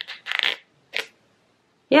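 Short plastic clicks and rattles as a bristle row is slid out of a Denman styling brush: a quick cluster about half a second in and a single click near the one-second mark.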